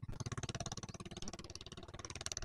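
An engine running steadily with a fast, even beat over a low hum.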